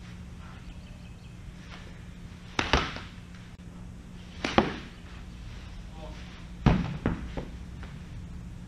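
Baseballs thrown to a crouching catcher smacking into the catcher's mitt and gear during a receiving and blocking drill. There is a double smack near three seconds in, one about halfway, and two close together near the end, over a steady low hum.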